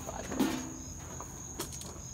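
Crickets chirping outdoors, one steady high-pitched trill running under everything. A short low murmur comes about half a second in, and a faint click a little past halfway.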